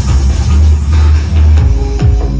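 Loud dance music with deep bass and drums, played through loudspeakers driven by a PCM20 power amplifier on test. A deep bass note holds for most of it, then the drum beat and bass line come back near the end.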